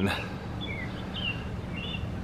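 Steady outdoor background noise with a few faint, short bird chirps.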